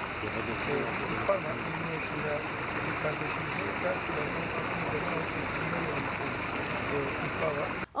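A steady rushing noise, like running water or heavy rain, with faint, muffled voices underneath. It cuts off abruptly near the end.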